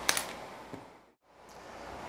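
A short light knock right at the start, as a small sculpting tool is set down on a tabletop, then faint room hiss that fades out to silence a little after a second in and fades back up.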